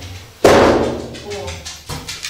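A single heavy thump about half a second in, fading over about half a second: a blow struck to knock a small door into place in its opening.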